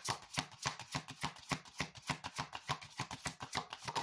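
A deck of oracle cards being shuffled by hand, the card edges clicking together in a quick, even rhythm of several strokes a second.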